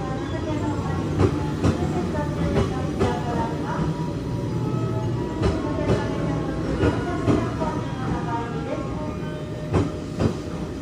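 Wheels of a JR West 283 series limited express train clacking over rail joints as it rolls slowly into a platform. The clacks come irregularly, often in pairs about half a second apart, over a steady rumble.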